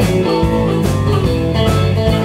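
Live blues band playing: electric guitars, electric bass, keyboard and drum kit, with a steady beat of drum hits under held guitar and keyboard notes.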